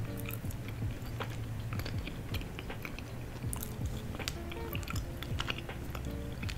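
A person chewing food close to the microphone, with a quick run of crisp, crackly clicks from the bites and chews.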